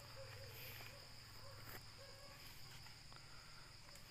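Faint, steady, high-pitched insect chirring over an otherwise near-quiet background.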